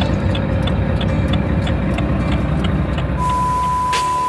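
UD Quester truck's diesel engine idling, heard from inside the cab, with a light ticking about five times a second. Near the end a steady electronic beep with hiss comes in over it.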